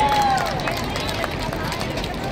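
Players' footsteps running on an outdoor basketball court, a scatter of short knocks over crowd chatter, with a voice's drawn-out call fading out about half a second in.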